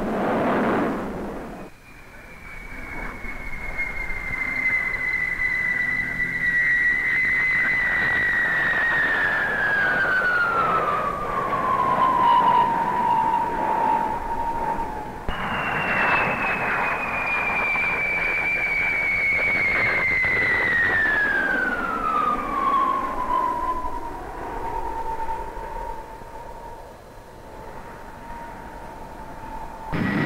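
Turbojet whine of a de Havilland Comet jet airliner flying past, its pitch gliding down slowly as it passes. A sudden cut about halfway through starts a second jet flypast whose whine falls the same way and then holds a steady tone.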